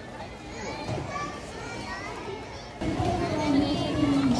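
Crowd hubbub of many families, with children's voices and adult chatter. About three seconds in, a louder, nearer voice suddenly cuts in.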